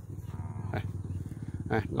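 A steady low motor hum with an even, fast pulse, with a person's voice starting just before the end.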